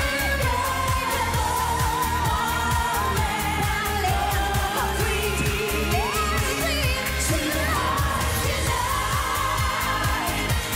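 Live pop performance: a woman's lead vocal belting a melody over a dance-pop backing track with a steady driving beat.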